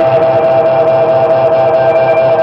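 Post-punk band music, loud and dense, with electric guitars and a held note running through it.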